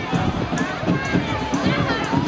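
Crowd of people calling and shouting, many voices overlapping.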